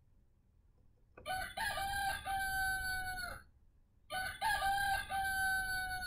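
A recorded rooster crowing, played back twice by a wooden farm-animal sound puzzle. The first crow starts about a second in and the second about four seconds in; each lasts about two seconds and stops abruptly.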